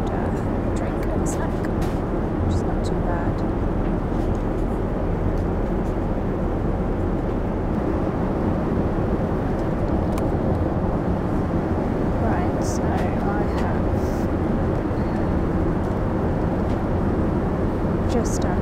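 Steady cabin noise of a Boeing 787 Dreamliner in cruise: a constant low rush of engine and airflow.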